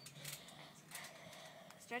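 Quiet background with faint scattered rustles and clicks, and a girl's voice starting right at the end.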